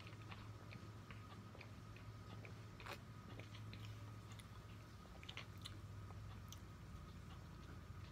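Faint sipping and swallowing of soda from an aluminium can: scattered small mouth clicks and gulps, one a little louder about three seconds in, over a low steady hum.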